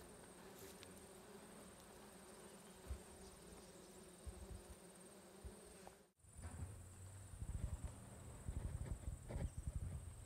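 Faint outdoor ambience with a steady high-pitched insect drone and a low hum. About six seconds in it drops out for an instant, then a louder low rumble with irregular bumps comes in.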